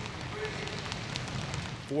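Gymnasium ambience of a team practising indoors: a steady noisy hiss with faint scattered clicks and scuffs.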